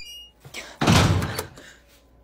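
A door latch clicks, then a door shuts with a heavy thud about a second in.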